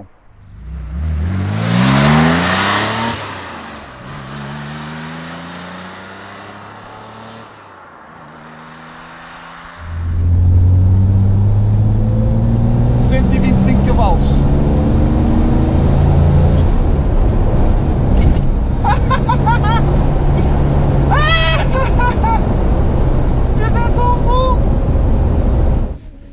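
A 1970 Porsche 911T's air-cooled flat-six engine accelerating through the gears, its pitch climbing and dropping back at each shift, with a loud rush about two seconds in. From about ten seconds in it is heard much louder from inside the cabin, pulling steadily, with a man laughing over it.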